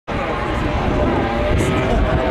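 Car engine running at a drag strip, a steady loud rumble, with people's voices over it.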